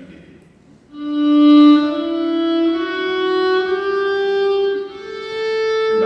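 Solo violin played with the bow: about a second in, a long low note begins and climbs slowly in small steps, and a higher note is held near the end.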